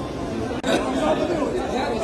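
Only speech: several people talking at once in a large hall, overlapping chatter with no clear words.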